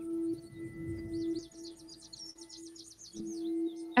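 Quiet ambient background music: a sustained ringing drone note that swells and fades slightly, with a rapid run of high chirps through the first half.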